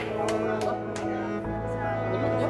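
Background music of sustained held notes over a low bass note that changes about halfway through, with four short knocks in the first second.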